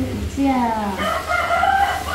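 A rooster crowing, its long drawn-out call falling in pitch and ending about a second in.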